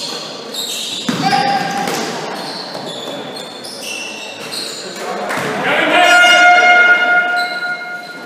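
Basketball game on a hardwood sports-hall floor: sneakers squeaking and the ball bouncing, with voices, in a reverberant hall. From about six seconds a loud held tone lasts nearly two seconds and is the loudest sound.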